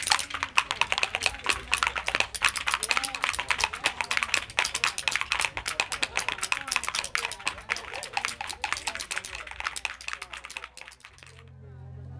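Rapid run of scratchy squeaks and chirps from a handmade wooden twist bird call worked by hand, the wooden body rubbed against its screw. The squeaking stops about a second before the end, leaving a low rumble.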